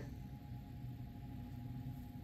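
A faint steady hum with a held tone and no distinct sound events.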